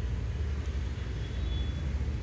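A steady low background rumble with no distinct knocks or clicks.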